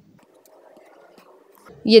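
Faint room noise, then a woman's voice starting to speak near the end.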